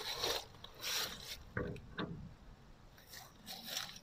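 Faint, irregular scraping and rubbing, with a sharp click about two seconds in: a camera pressed against a rusted iron crypt door, grating on the metal around a hole in it as it is pushed up to look through.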